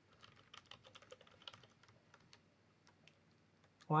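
Computer keyboard keys clicking in a quick run of keystrokes as a username is typed, thinning out to a few single key presses after about two and a half seconds.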